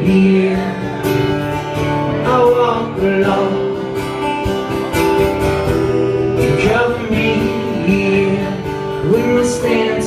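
Two acoustic guitars strumming chords together, played live in an unplugged rock arrangement.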